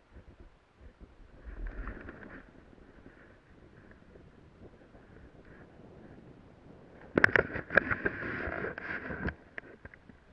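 Snow crunching and scraping close to the camera, loudest for about two seconds near the end, with several sharp knocks in it.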